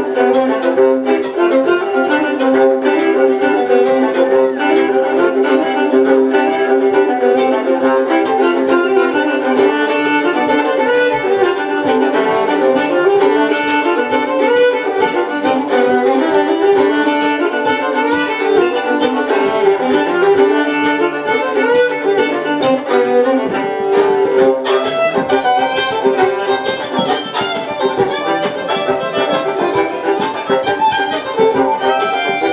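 Two fiddles playing a folk tune together as a duet. The sound grows brighter towards the end.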